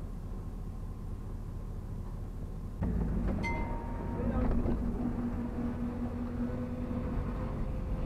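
Truck engine idling, heard inside the cab, then getting louder about three seconds in as the truck pulls away under light throttle.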